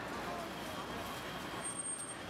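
Steady outdoor city ambience: a low, even wash of street traffic with distant voices chattering.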